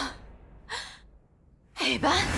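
A woman gasps briefly, a short sharp breath, in a near-quiet pause. A louder sound cuts in near the end.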